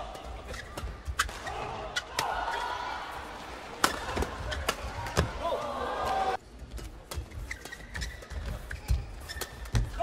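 Badminton racquets striking a shuttlecock in a fast doubles rally: a string of sharp, irregular hits, the loudest about four seconds in, over the murmur and voices of an arena crowd.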